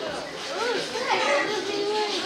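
Indistinct chatter of several young, high-pitched voices, with no words clear.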